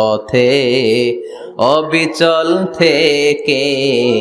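A man's voice chanting in a melodic, sung delivery, holding long notes that bend slowly in pitch, with short breaths between phrases.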